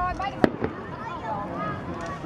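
Aerial fireworks: a sharp bang about half a second in, then a smaller pop.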